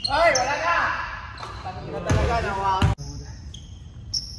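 Loud shouting voices ring in a gym hall over a basketball bouncing on the hardwood court, with two sharp knocks of the ball late in the shouting. Short high squeaks, like sneakers on the wood, come and go, and the sound cuts off suddenly about three seconds in.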